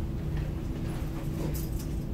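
Classroom room tone: a steady low hum with a faint steady tone, and a brief faint rustle about one and a half seconds in.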